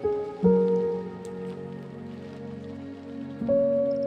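Slow ambient music with a rain sound layered in. New chords come in right at the start, again about half a second in, and again near the end, each ringing out and fading over a held background.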